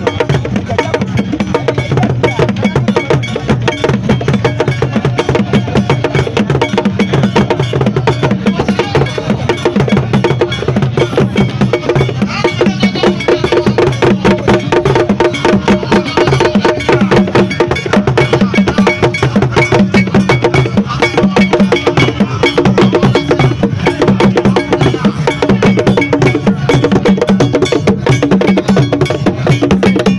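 Percussion-led traditional music: fast, dense drum and bell or wood-block strokes keep a steady rhythm, with low held tones beneath them.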